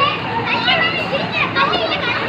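High-pitched voices, children calling and chattering, over a steady rush of flowing floodwater.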